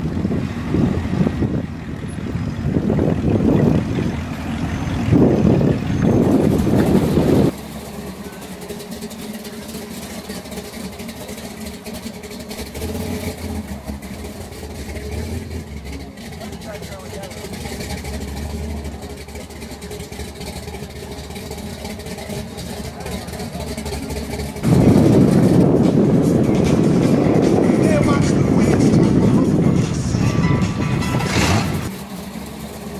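Engines of classic cars and hot rods rumbling as they drive slowly past. The sound changes abruptly twice: a loud rumble, then a quieter stretch of steady tones from about a quarter of the way in, then a loud rumble again near the end.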